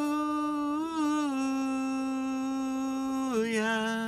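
A woman's unaccompanied singing voice holding one long, steady note, lifting slightly in pitch about a second in and stepping down to a lower note near the end.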